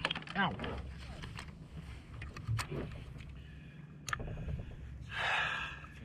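Fishing gear being handled in a kayak while a netted fish is dealt with: two sharp clicks a second and a half apart, then a brief rushing noise near the end, over a steady low rumble.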